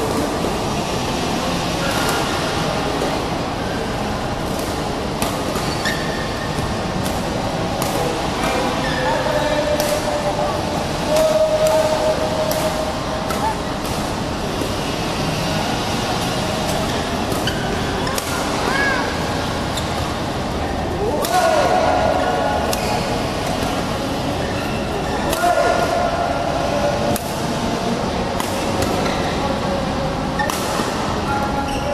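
Badminton rally: rackets striking the shuttlecock as sharp clicks scattered through, with short squeaks and glides of shoes on the court mat and voices in the hall.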